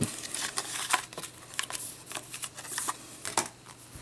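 Paper booklets and a thin card sleeve rustling and scraping as they are pushed back into the sleeve, with scattered crinkles and small taps.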